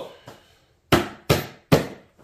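Three sharp knocks about half a second apart as hands handle a padded soft rifle case on a wooden table.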